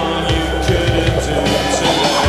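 Live synth-pop band music with sustained synthesizer chords over a steady drum beat, and no vocals in this stretch.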